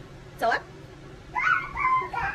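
A toddler's high-pitched wordless vocalizing: a short sliding squeal about half a second in, then a longer sing-song call with wavering pitch near the end.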